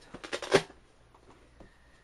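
A cardboard box being handled: a quick run of rustles and knocks in the first half second, the loudest about half a second in, then faint room tone.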